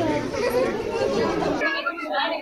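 Many people talking at once, a busy crowd chatter in a large room. It changes abruptly near the end to thinner, clearer voices with the low background gone.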